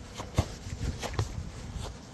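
A few soft thumps and scuffs of feet on grass as the football is met and stopped underfoot, the sharpest one about half a second in, over a low rumble of wind and handling on the phone's microphone.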